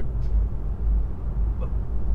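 Road and tyre rumble inside the cabin of a Volvo EX30 electric car driving over a badly broken, bumpy road. The sound is a steady low rumble that rises and falls a little with the bumps.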